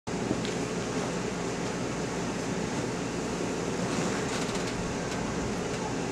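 Steady background noise in a room: an even hiss with a low hum under it and no distinct events.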